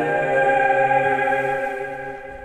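Music of sustained, chant-like voices holding a chord, starting to fade near the end.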